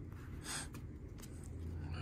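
Faint handling of trading cards: cards being slid and shuffled between the hands, with a brief soft swish about half a second in and a few light ticks.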